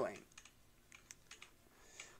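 Faint, irregular clicks of typing on a computer keyboard, a few light keystrokes spread through a quiet pause.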